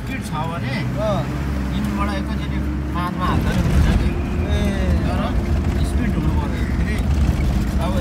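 Car cabin noise: a steady low rumble of engine and tyres, with people talking over it. About three seconds in the rumble gets rougher and louder as the car moves onto a rough dirt road.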